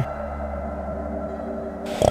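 Background music: a steady ambient drone of held tones over a low hum.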